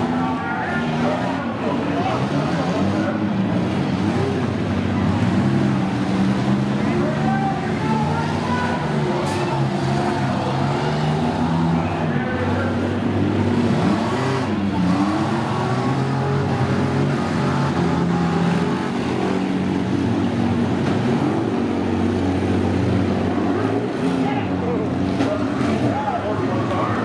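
Several demolition derby vans' engines running and revving as the vans push and ram one another. One engine's pitch dips and climbs about halfway through.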